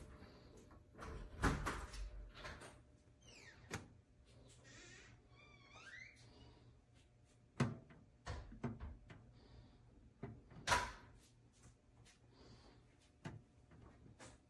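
Scattered knocks and clunks from a Neretva bread maker's hinged lid and housing being handled, the lid shut within the first seconds. The sharpest clunks come about seven and a half and eleven seconds in.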